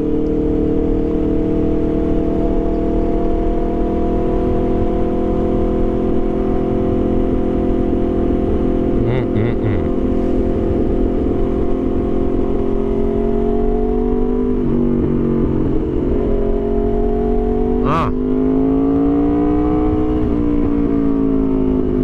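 Aprilia RSV4 Factory's V4 engine running at a steady cruise with a constant note, with wind noise underneath. About two-thirds in the note changes, and near the end it dips and climbs again as the throttle is rolled off and back on, with a single sharp click along the way.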